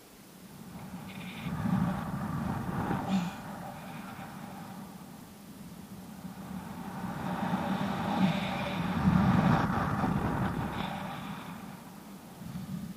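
Wind rushing over a body-worn camera's microphone as a rope jumper swings on the rope below a tower, swelling twice with the speed of the swing.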